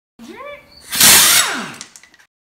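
Channel logo intro sound effect: a short rising tone, then a loud whoosh about a second in that fades away with a falling pitch.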